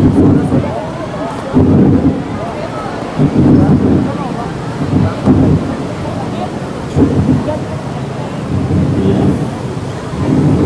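Wind buffeting the microphone in repeated low rumbling gusts, about every one and a half to two seconds, over a steady hiss.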